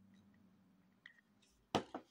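Quiet handling sounds while gluing: a faint low hum fades away, a light click comes about a second in, and near the end there are two short knocks as the hot glue gun is set down on the table.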